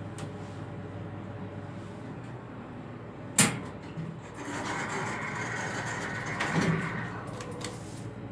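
Elevator car doors sliding for about three seconds, starting a second after a single sharp knock, over a steady low hum.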